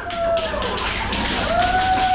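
TASER energy weapon clicking rapidly as its pulses run through the probe wires into a cadet. A drawn-out vocal groan is heard over the clicking at the start and again from about halfway.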